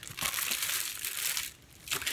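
Plastic wrapping on a pack of paper file folders crinkling as it is handled, for about a second and a half before it stops.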